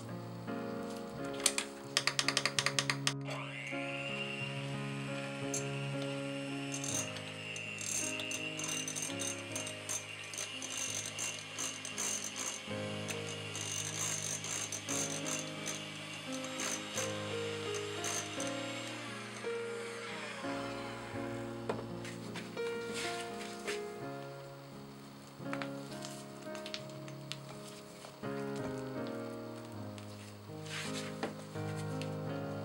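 Electric hand mixer beating softened butter in a glass bowl. The beaters rattle loudly about two seconds in, then the motor runs with a steady whine until about two-thirds of the way through. Background music plays throughout.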